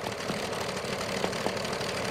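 Sewing machine running steadily as it stitches fabric.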